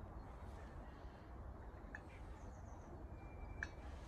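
Quiet background: a low steady hum with two faint light clicks, one about two seconds in and one near the end.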